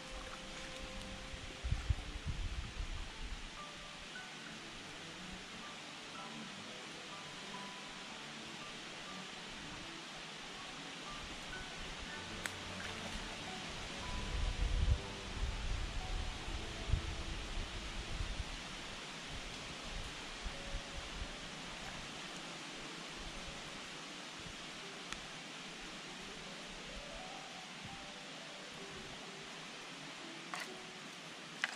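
Steady rush of creek water with soft background music, a scatter of short melodic notes, over it. A few low rumbles, about two seconds in and again from about fourteen to eighteen seconds.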